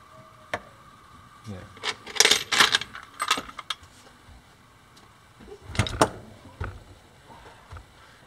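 Metal parts of a DC electric motor being taken apart clinking and rattling as they are handled: a single click, then a run of clinks about two to four seconds in, and another short burst around six seconds.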